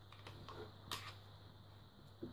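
Faint handling noise of headphones: a few light clicks and taps as the leatherette earpad is pressed back onto the ear cup and the headphones are picked up by the headband, the sharpest click about a second in.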